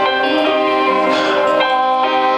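Live band music with no singing: several long held notes sound together and shift to new notes every second or so.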